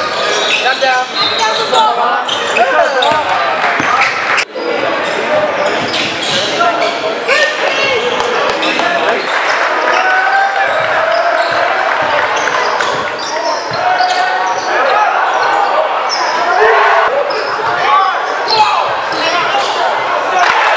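Live game sound in a basketball gym: a basketball bouncing on a hardwood court, under a constant din of crowd and player voices echoing in the large hall.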